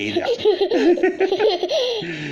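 A young child laughing: a long run of high-pitched giggles whose pitch bobs quickly up and down.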